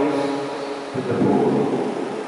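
A man's voice holds one long, steady vowel through the church microphone and public-address system. About a second in, it breaks off into a short, loud rush of noise that dies away.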